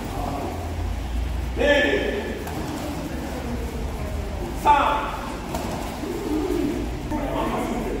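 A man's voice calling out counts for a group drill in a large hall, with short shouted calls a couple of seconds apart. The loudest is a sharp call about halfway through. A steady low hum from the room runs underneath.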